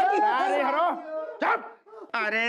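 Wordless vocal cries and yelps from a man, gliding up and down in pitch, with a short sharp cry about one and a half seconds in.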